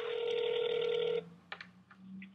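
Telephone ringback tone heard through a phone's speakerphone: one steady ring lasting about a second and a half that stops abruptly, while the dialled number rings before being answered. A short click follows.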